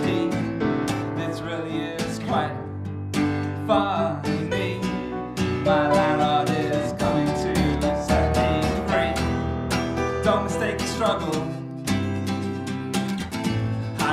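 Live song: acoustic guitar strummed in a steady rhythm with electric keyboard, and sung vocals over it.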